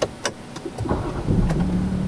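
Range Rover engine being started: a few clicks, then the engine cranks and catches about a second in and settles into a steady idle hum.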